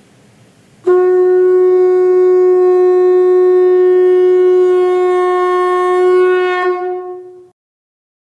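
Conch shell (shankha) blown in one long, steady note that starts suddenly about a second in, wavers slightly near the end and fades out.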